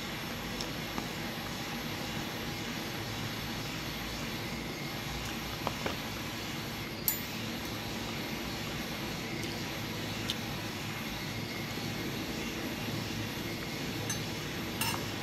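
A few light clinks of a metal spoon and fork against a food container, the sharpest about seven seconds in, over a steady rushing background noise.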